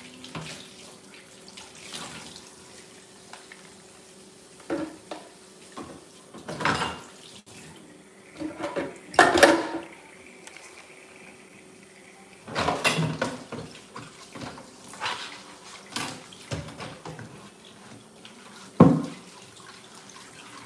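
A kitchen sink being cleaned out: short bursts of running and splashing water and dishes and utensils clattering in the basin, each a second or less, the loudest a sharp knock near the end.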